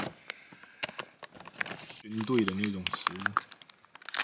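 Packaging bag crinkling as it is handled, a scatter of short sharp crackles.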